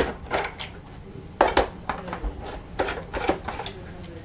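Screwdriver undoing screws from the plastic underside of a Wertheim PB18 vacuum powerhead: a run of irregular clicks and light scrapes as the bit turns in the screw heads.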